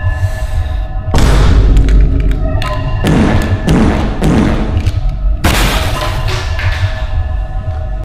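Loud thumps and bangs of hands slamming on a wooden desk and a closed laptop, a run of heavy hits in the middle, over music with heavy bass.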